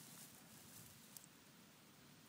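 Near silence: faint steady outdoor background hiss, with one small faint click about a second in.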